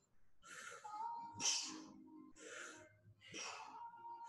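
Heavy rhythmic breaths, about one sharp exhale a second, from a man working through side-lying knee-to-elbow oblique crunches, with faint music underneath.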